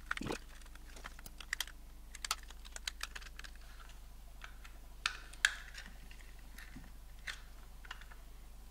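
Small sharp clicks and taps of a precision screwdriver working tiny screws out of a DJI Mavic Pro's plastic shell part, with the screws and plastic set down on a hard tabletop. The clicks come thick and fast for the first few seconds, then a few single louder ones, the loudest about halfway through as a loose broken piece of plastic that had been rattling inside comes out onto the table.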